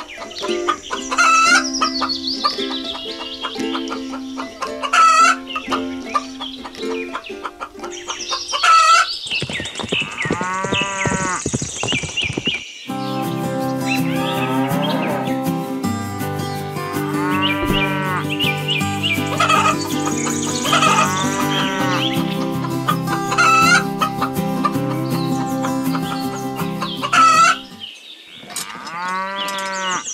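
Farmyard sound effects of chickens clucking and a rooster crowing, recurring every few seconds. A steady musical backing comes in about a third of the way through, and the calls continue over it.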